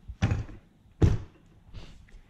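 Toyota 1UZ-FE V8 tappet cover set down onto a bare cylinder head on a test fit, knocking against it twice, about a second apart.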